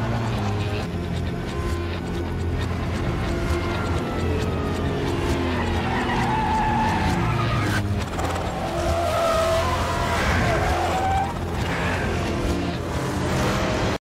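Heavy truck engines running at speed in a film action mix, with a falling engine note midway and tyre squeals in the second half, over a music score.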